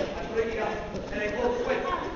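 A man's voice speaking lines in a theatre, heard from a distance.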